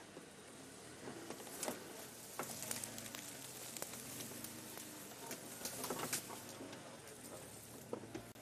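An open safari vehicle creeping forward off-road, with irregular crackling and rustling of twigs and dry brush under the tyres and against the vehicle, over a faint low engine hum.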